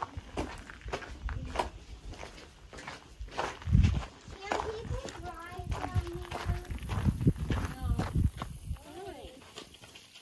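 Footsteps on gravel and stone with indistinct voices talking, and low gusts of wind rumbling on the microphone, strongest about four seconds in and again near the end.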